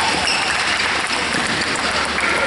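Spectators applauding in a steady patter of clapping, at a pause between badminton rallies.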